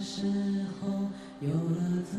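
A young male voice singing a slow melody with long held notes over soft, steady accompaniment.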